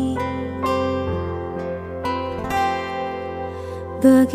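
Instrumental passage of a pop song: an acoustic guitar plays a slow run of plucked notes, each ringing out and fading, over a steady low bass.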